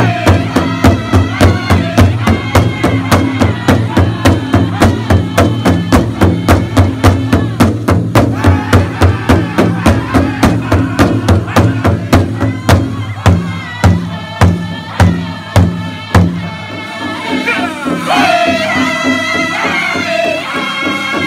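Powwow drum group: several singers beat a large hide powwow drum in unison, about two and a half strikes a second, while singing in high-pitched powwow style. Past the middle the beat slows and turns uneven, the drum stops about four seconds before the end, and the voices carry on alone, high and loud.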